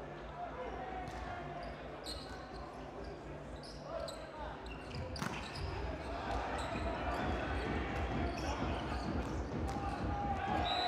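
Indoor volleyball rally: the ball is struck several times, the hardest hit about five seconds in, over arena crowd noise that grows louder in the second half.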